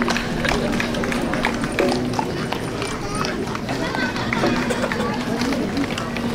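Footsteps of a procession of people walking in straw sandals on asphalt, many short scuffs and taps, under the chatter of a roadside crowd.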